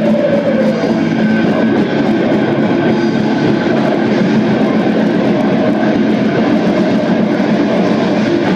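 Black metal band playing live, with heavily distorted electric guitars and drums forming a dense, steady wall of sound.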